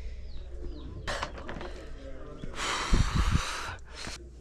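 Faint, short falling bird chirps, then a rush of breathy noise about a second long late on, the loudest sound, with a few low thumps at its start.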